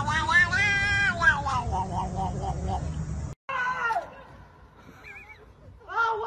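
Ginger cat meowing: one long drawn-out meow about a second long, then a string of shorter meows, over a steady low background rumble. The sound cuts off abruptly a little over three seconds in, leaving only quieter sounds.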